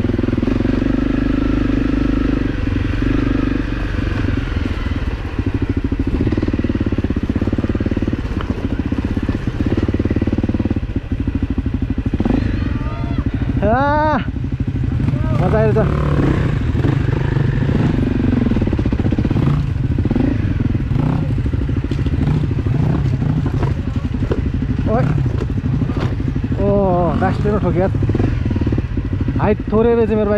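Dirt bike engine running steadily while riding a rough dirt trail, heard from on the bike itself. A few short pitched sweeps that rise and fall come through around the middle and again near the end.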